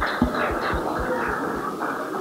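Room sound of a large hall in a pause between sentences: a low, steady murmur with dull low thuds about four times a second, slowly fading.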